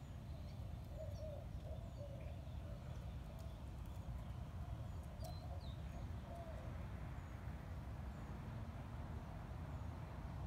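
Faint birds chirping with short warbling notes, over a steady low outdoor rumble.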